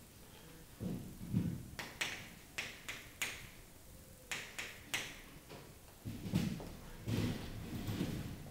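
Chalk striking and scratching on a chalkboard in two groups of short, sharp strokes, with dull low thuds before and after them.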